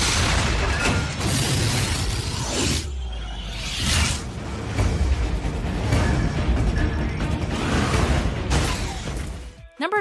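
Film battle-scene soundtrack: explosions and crashing debris layered over music, with a short lull about three seconds in.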